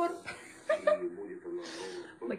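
A woman chuckling softly in short broken bursts, with a breathy rush of air near the end.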